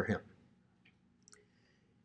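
Quiet room with two faint, short clicks, about a second in and again a moment later.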